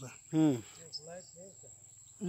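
Steady, unbroken high-pitched insect chorus, like field crickets, with a man's voice speaking a short phrase about half a second in.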